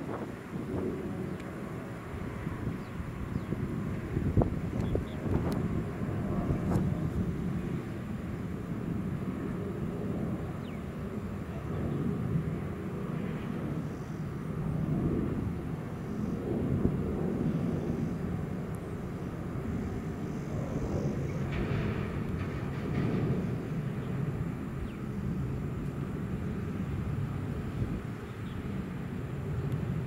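Steady low rumble of an Airbus A320's jet engines and airflow, swelling and easing slightly.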